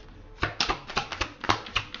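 A deck of tarot cards being shuffled: a quick, irregular run of papery clicks and flicks that starts about half a second in.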